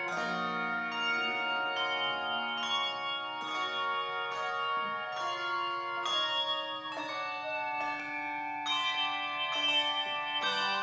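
Handbell choir ringing a slow hymn arrangement: chords struck a little under once a second, each one ringing on into the next.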